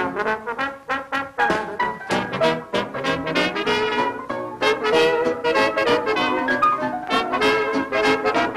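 A 1937 dance band playing an instrumental passage led by its brass section, trumpets and trombone, over a steady rhythm section beat.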